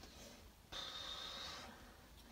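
A faint breath of about a second, starting partway in, with a thin high hiss to it.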